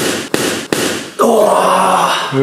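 A boxing glove landing a punch on a bare torso with a sharp thud, followed by a few quick breathy hisses and then a drawn-out groan starting a little over a second in.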